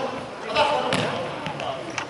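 Futsal ball being kicked and hitting a wooden sports-hall floor: two sharp knocks about a second apart.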